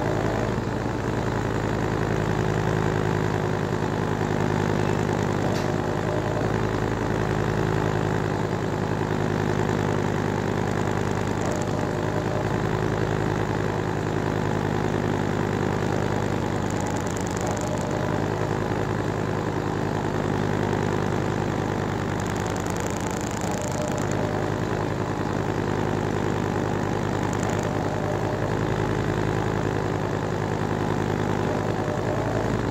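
Top-loading washing machine spinning its tub fast on a spin cycle: a steady motor hum of several constant tones over a rumble.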